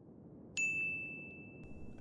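Mobile phone text-message notification: a single high ding about half a second in that rings on, slowly fading, for over a second, over a low steady rumble.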